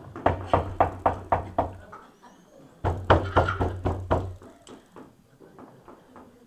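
Hard knocking on wood, two quick runs of about seven knocks each at roughly four knocks a second, with a pause between them.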